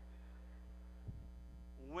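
Steady electrical mains hum in the sound system, heard in a pause between words, with a faint brief low sound about a second in.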